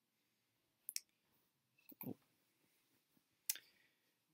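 Near silence broken by a few faint, short clicks: two close together about a second in, one about two seconds in and one near the end.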